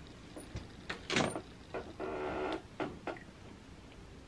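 Clear plastic ruler and marker being handled on a worktable over fabric: several light knocks and clicks, a louder rough scrape a little after a second in, and a half-second rubbing noise about two seconds in.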